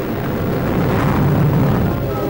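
A loud rumbling noise with no clear pitch, swelling to a peak near the end and then breaking off as sustained music returns.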